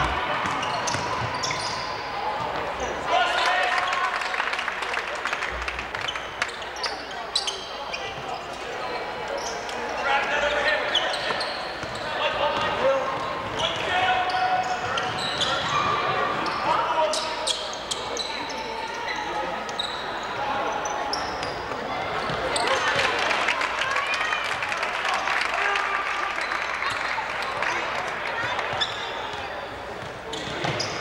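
Gym game sound at a high school basketball game: spectators and players calling out in overlapping voices, with the ball bouncing on the hardwood court.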